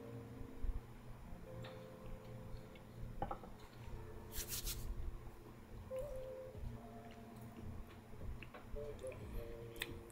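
A person quietly tasting a sip of whiskey: faint mouth and swallowing sounds, with a short sharp breath out about four and a half seconds in. Faint held tones sound underneath.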